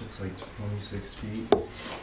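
Wooden closet door or panel being eased open by hand, rubbing and scraping, with one sharp click about a second and a half in. A low, muffled man's voice talks under it.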